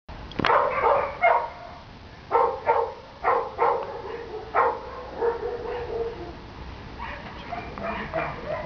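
Dog barking in short calls, several in quick pairs, loudest in the first five seconds and fainter after, with a short drawn-out whine about five seconds in.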